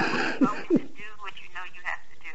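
Untranscribed speech in a telephone conversation, the voices sounding like they come through a phone line. It opens with a short loud burst right at the start.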